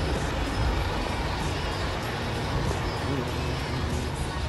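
A city route bus driving past close by: steady engine and road noise, with music playing over it.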